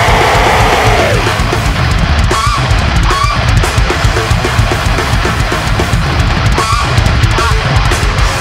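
Heavy metal band playing: distorted electric guitars over rapid, dense drumming.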